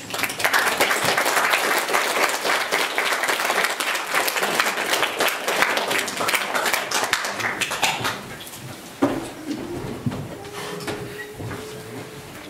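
Audience applauding at the end of a song, a dense patter of clapping that dies away about eight seconds in.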